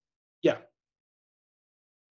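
A single short spoken "yeah" over a call line, then dead digital silence.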